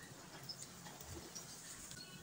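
Faint, light sizzling and scraping as chopped garlic is pushed off a wooden chopping board with a wooden spoon into a frying pan over a gas flame.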